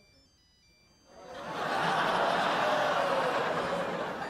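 A mobile phone ringtone in a theatre audience, a faint high electronic melody of short steady tones. From about a second in, the audience laughs, a loud sustained sound that covers it.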